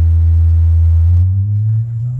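Live reggae band's bass playing one deep sustained note that slides upward in pitch from a little over a second in.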